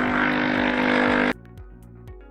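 Capsule espresso machine's 15-bar pump buzzing steadily as a short espresso is pulled, cutting off suddenly about a second and a half in when the shot is done. Soft background music with a beat runs underneath.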